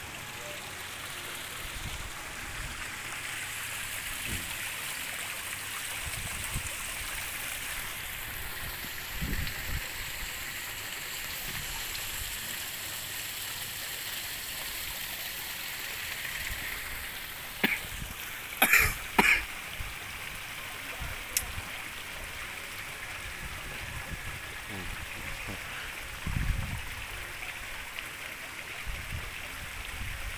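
Steady outdoor background hiss, with a brief cluster of sharp, louder sounds a little past the middle and scattered low bumps.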